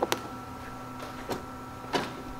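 Melitta Cafina XT4 bean-to-cup coffee machine beginning its switch-off process: a steady hum with a few sharp clicks, the first two as its panel button is pressed, then two more about a second and a half in and near the end.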